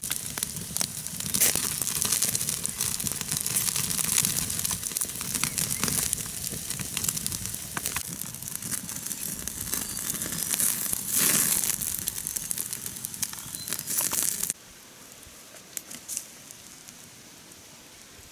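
Wood campfire crackling and meat sizzling as it roasts on bamboo skewers close over the glowing coals, a dense run of pops and hiss. It stops suddenly about three-quarters of the way through, leaving quiet outdoor background with a couple of faint knocks.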